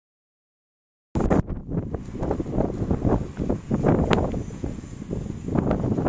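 Wind buffeting the microphone: a loud, gusty low rumble that cuts in abruptly about a second in, with a few small clicks.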